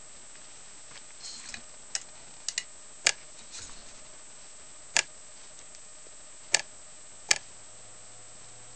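Solar vibrating bug's small vibrating motor, taken from an Oral-B Pulsar toothbrush, firing in brief jolts that rattle against the plastic lid as short, sharp clicks at irregular intervals of about one to two seconds, some in close pairs. Each jolt is the FLED solar engine dumping its 4700 µF capacitor, charged by the lamp-lit solar cell, through the motor.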